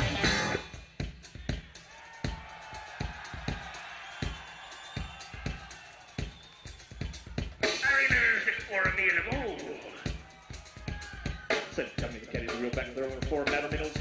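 Live rock band recording: a steady, evenly spaced drum-kit beat, then about eight seconds in a man's voice comes in over the band, talking fast like an auctioneer.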